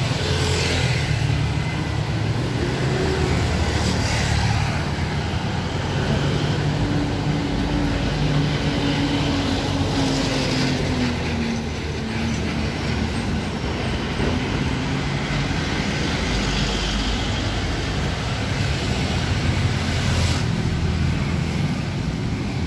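Street traffic: a steady rumble of passing cars and vehicle engines, with one engine hum dropping slightly in pitch partway through.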